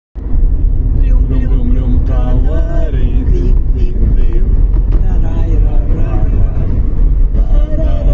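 Steady low road rumble of a car driving, heard from inside the cabin, with a voice singing a song over it.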